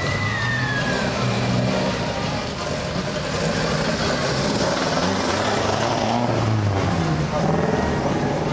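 A classic coupe's engine revving as the car accelerates away, its pitch rising and dropping a few times.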